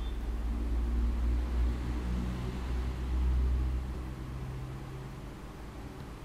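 A low rumble that swells over the first seconds, with a faint hum above it, and dies away about four seconds in.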